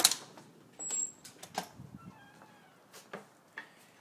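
A door clicks open at the start, followed by a few soft knocks and a faint, brief high-pitched squeak about two seconds in.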